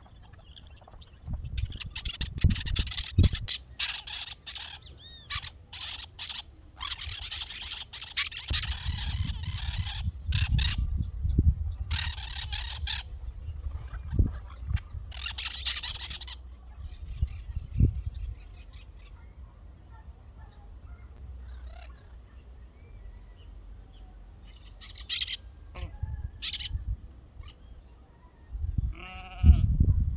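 Birds calling in a run of harsh, raspy bursts through the first half, then a few short high chirps later, over a low rumble.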